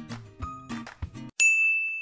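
Background music with a beat that stops suddenly a little past halfway, followed by a single bright, bell-like ding that rings on and slowly fades.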